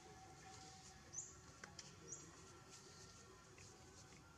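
Near-quiet forest ambience with two faint, short, high-pitched rising chirps about a second apart, and a few soft clicks.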